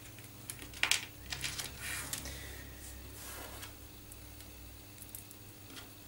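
Faint handling noise of plastic cable clips and spiral-wrapped cables being positioned by hand: a sharp click about a second in, then soft rustling that dies away, over a low steady hum.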